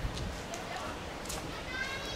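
Sulphur-crested cockatoos foraging on the ground, with scattered short clicks from beaks digging in soil and grass, and a short pitched call starting near the end.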